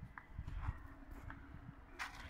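Footsteps crunching on gravel, a few steps about half a second apart, over a low, uneven rumble of wind on the microphone.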